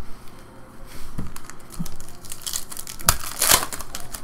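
Foil wrapper of a 2015 Panini Contenders football card pack crinkling in the hands and being torn open, with two loud rips near the end.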